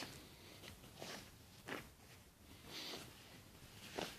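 Faint rustling of denim jeans being handled and turned over, a few soft swishes of fabric.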